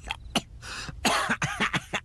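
A voice-actor's rapid run of harsh coughs from a cartoon character choking on bong smoke, the bursts coming thicker about halfway through.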